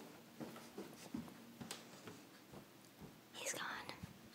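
A person whispering faintly, with one louder breathy whisper near the end, over light ticks and knocks from the handheld camera moving.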